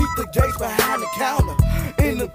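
Hip hop track: rapped vocals over a drum beat.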